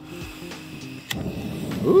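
Single-burner propane camp stove being lit: a sharp click about a second in, then a steady hiss that grows as the burner catches.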